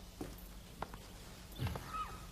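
A few faint, scattered knocks and taps, with a slightly heavier thud about a second and a half in.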